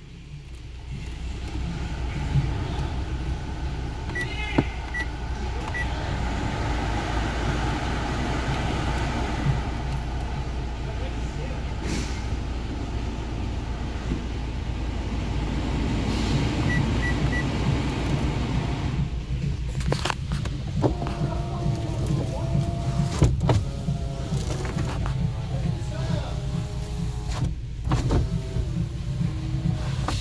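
Car heater/air-conditioning blower fan running, its air rush growing louder as the fan-speed knob is turned up. Short beeps come in two sets, a few seconds in and again about halfway.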